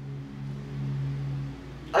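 Electronic keyboard holding a low chord of steady notes, swelling slightly and fading out about a second and a half in.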